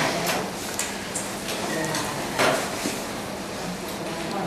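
A few scattered knocks and clatters of handling and movement, the loudest a little past halfway, over room noise with faint voices in the background.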